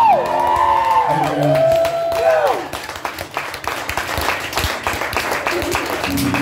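A small audience clapping, with a few sliding whoops and cheers in the first couple of seconds.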